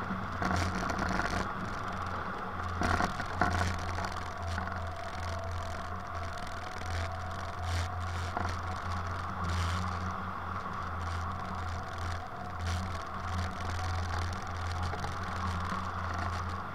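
Wind rushing over an Icaro 2000 RX2 hang glider in gliding flight, picked up as steady wind noise on the mounted camera's microphone with a constant low hum. A few short rattles come about three seconds in.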